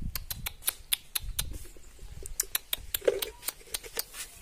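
Common marmosets making a rapid, irregular run of short, sharp, high-pitched calls, about five a second.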